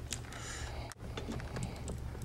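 Faint scattered light clicks of handling small metal hardware, as a mounting screw is fitted onto a power driver's bit, over a low steady hum.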